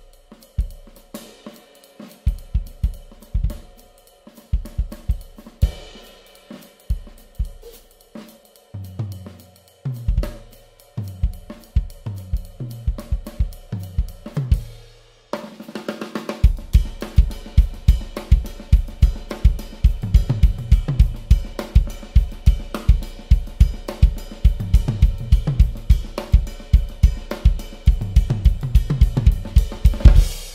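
Acoustic drum kit played in a groove with hi-hat, cymbals and snare, the bass drum struck by an AHEAD Switch Kick Boom Kick beater. About halfway through it cuts abruptly to the same groove played with the Sonic Boom Kick beater, the bass drum strokes faster and steadier.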